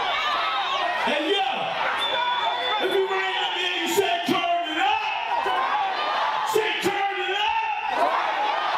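A man's voice shouting and rapping into a microphone through a concert PA, with a crowd yelling back.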